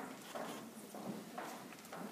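Footsteps of hard shoes on a stage floor, a few separate knocks, with faint murmuring voices underneath.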